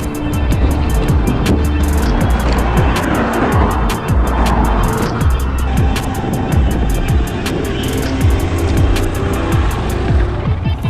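Electronic background music with a steady beat and heavy bass.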